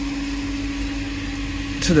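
Power flush machine's pump running steadily while it circulates cleaning chemical through a central heating system: an even electric hum with one strong constant tone.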